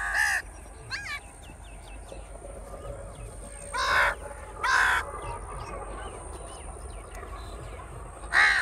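A flock of crows cawing: a loud caw at the start, a fainter one about a second in, and two more loud caws close together about four and five seconds in, with fainter calls between.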